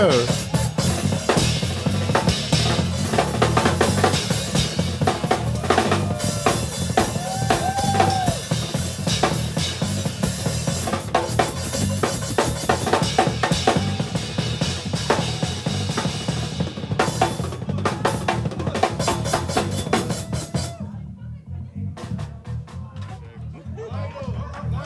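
Drum kit played hard and fast in a gospel-chops drum shed, with dense fills across snare, toms, bass drum and cymbals; the drumming stops about twenty seconds in.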